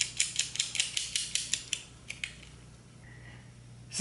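Small metal parts clicking as a nut is spun by hand onto a bolt through a lock washer on a metal clamp: a quick, even run of about seven clicks a second for nearly two seconds, one more click, then it stops.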